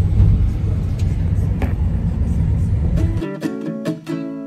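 Low, steady rumble inside a moving car, cut off abruptly about three seconds in as plucked acoustic guitar music begins.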